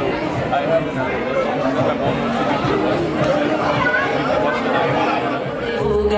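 Several people talking at once in overlapping conversation, the words not made out.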